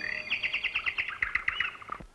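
A small bird chirping in a fast, even series of short notes, about ten a second, stopping shortly before the end.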